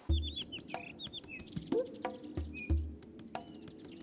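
Birds chirping in short chirps that fall in pitch, several in quick runs, over background music with a few low bass notes.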